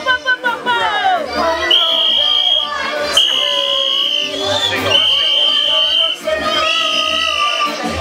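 A child's voice chanting into a microphone over a reggae/dancehall backing track through a PA, with a deep bass line and a high held tone that comes back about four times.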